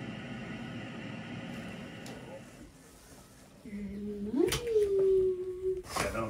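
A woman's drawn-out, sing-song greeting to a baby ("hi baby"): a low held note that slides up and is held high, in the second half. Before it, a steady hiss fades out about halfway through.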